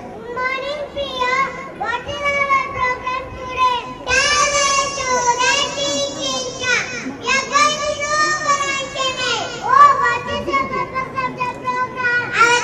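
A young child's high-pitched voice through a microphone, speaking in short phrases with brief pauses.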